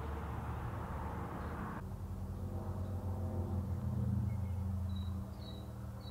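A low, steady motor hum with faint high bird chirps near the end.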